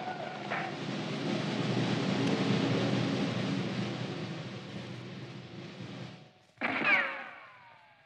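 Radio-drama sound effects of a war party charging in: a dense rumbling din with a mass of voices in it that swells and then fades away over about six seconds. Near the end comes a short sound falling in pitch.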